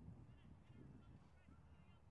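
Near silence: faint outdoor ambience with a low wind rumble and several faint, short bird calls scattered through the two seconds.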